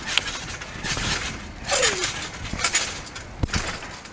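Children bouncing and landing on a trampoline mat, a few irregular thumps and knocks. A short falling vocal sound comes about two seconds in.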